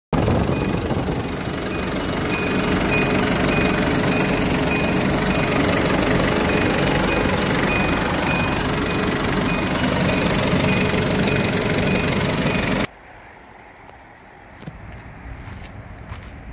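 Hyundai New Grace van's engine running steadily, heard close up in the open engine bay: a loud, even clatter with a faint regular high-pitched tick. It cuts off suddenly near the end, leaving wind on the microphone.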